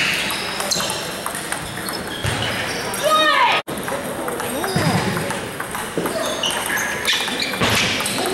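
Table tennis ball clicking off paddles and table in a rally, with shoes squeaking on the wooden gym floor, over a steady hubbub of voices and other matches echoing in a large hall. The sound cuts out abruptly for an instant a little past halfway.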